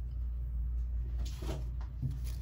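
Hands brushing against a figure's plastic wrap and the foam packaging insert: a short rustling scrape about a second and a half in, over a steady low hum.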